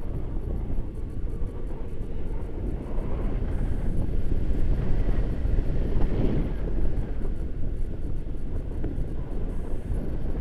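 Airflow of a paraglider in flight rushing over the camera microphone: a steady low rumble of wind noise that swells and fades with the gusts.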